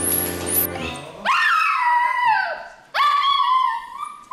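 Toy poodle giving two long whining cries, each jumping up in pitch and then sliding slowly down over about a second and a half.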